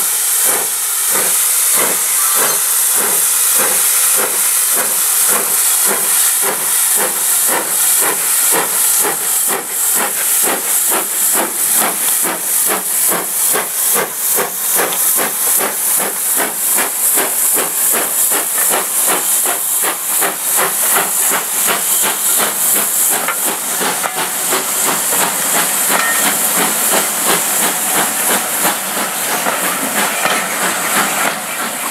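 Steam tank locomotive pulling away and accelerating past with its train. Its exhaust beats quicken steadily from about two a second to about four or five a second, over a continuous loud steam hiss.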